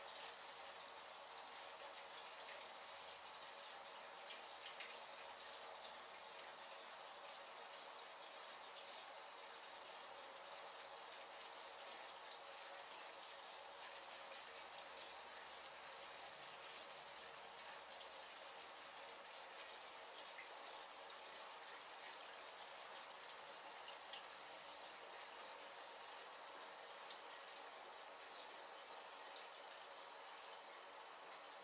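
Gasoline pouring from a can through a filter funnel into a 1953 Farmall Cub's fuel tank: a faint, steady pour.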